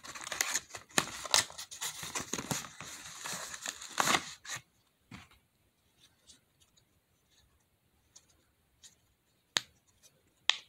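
Cardboard and plastic packaging being handled and opened for the first four and a half seconds, a dense irregular crackle. Then a few faint pops and one sharp pop near the end as the bubbles of a silicone pop-it fidget toy are pressed.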